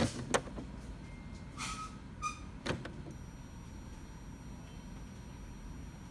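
Epson L3110 inkjet printer's mechanism working with the head parked, typical of its head-cleaning cycle: a few sharp clicks and two short whirs of a small motor in the first three seconds, then a faint steady high whine.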